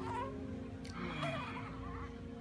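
A young baby cooing: a short, wavering vocal sound about a second in, after a briefer one at the very start.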